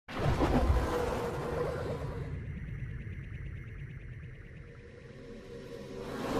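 Synthesized logo-intro sting: a sudden full-range hit that rings with steady tones and slowly fades, then a swelling whoosh that builds near the end.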